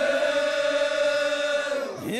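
Men's voices chanting one long held note of an Omani al-Azi chant, the pitch steady and fading slightly near the end.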